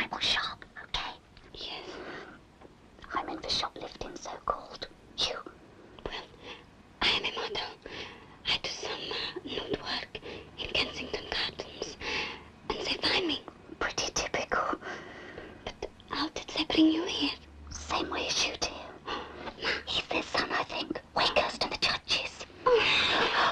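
A person's whispered, breathy voice in short irregular bursts, with no clear words and a brief voiced cry about 17 seconds in.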